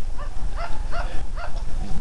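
Wind buffeting the microphone, a steady low rumble, with a run of short rising-and-falling calls behind it.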